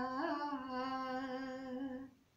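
A young woman singing unaccompanied, holding one long, steady note with a brief upward bend near the start; the note stops at the end.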